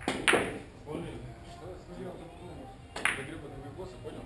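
Two sharp clacks of Russian billiard balls being struck, each with a brief ring: the loudest about a quarter second in, the second at about three seconds.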